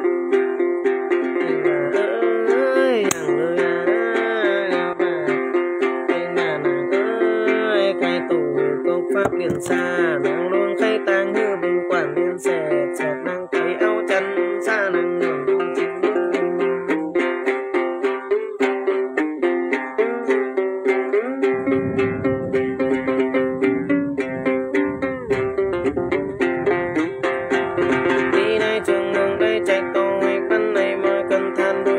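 Đàn tính, the long-necked Tày gourd lute, plucked in a fast, steady rhythm over a constant drone of its strings.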